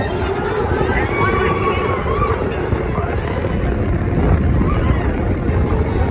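Space Mountain roller coaster car running through the dark on its track with a loud, steady rumble. Riders' voices rise over it about a second in.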